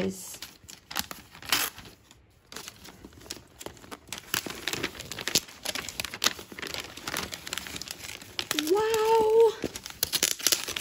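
Gift-wrapping paper crinkling and tearing in irregular crackles as a present is unwrapped by hand. Near the end comes a short hummed voice sound that rises and then holds.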